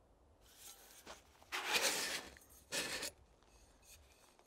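Screw-top lid of a Vargo Titanium BOT bottle-pot being worked open and pulled off: rubbing and scraping, with a louder stretch about halfway through and a shorter one near three seconds.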